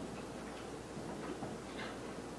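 Marker pen on a whiteboard writing Chinese characters: a few short, irregular stroke sounds, strongest near the end, over a steady background hiss.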